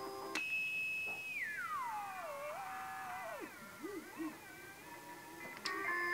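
Eddystone Model 1001 shortwave receiver: a click, then a steady high whistle that slides down in pitch over about two seconds, wavers and breaks up into low warbles. This is the heterodyne beat of the receiver's beat-frequency oscillator against the station's carrier as a front-panel knob is turned. A second click near the end brings the station's music back.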